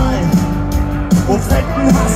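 Loud live punk rock band playing: electric guitars, bass and drums through a large PA, with some gliding, bent notes.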